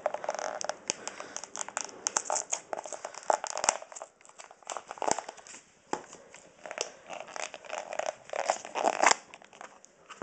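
Clear plastic tub of sandwich filling having its lid and seal worked off by hand: irregular plastic crinkling, crackling and clicks, with brief pauses part-way through.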